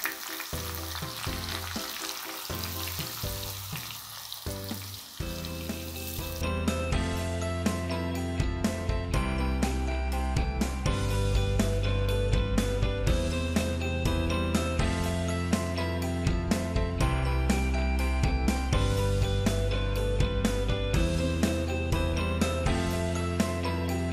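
Sliced onions sizzling loudly as they hit hot ghee in a pan. After about six seconds the sizzle gives way to instrumental background music with a steady, tinkling beat.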